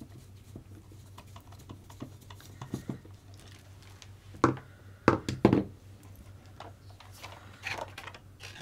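Small clicks and taps of a screwdriver and small parts being handled on an RC buggy's front suspension and the workbench, with a few sharper knocks about four and a half to five and a half seconds in, over a low steady hum.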